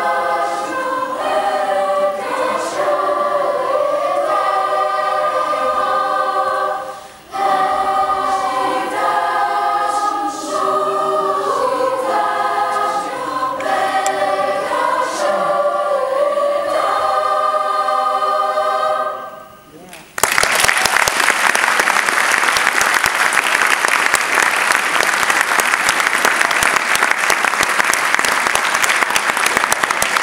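Mixed-voice school choir singing in harmony, with a brief break about seven seconds in. The song ends about twenty seconds in, and the audience applauds for the rest.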